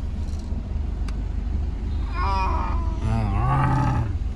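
Two roar-like calls, a higher one about two seconds in and a lower, wavering one in the last second, over the low hum of a car's engine heard from inside the cabin.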